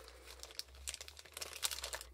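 Clear plastic packet crinkling as cardboard photo frames are handled and pulled out of it: a faint, quick run of small crackles.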